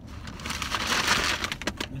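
Paper takeout bag rustling and crinkling as it is handled and lifted up.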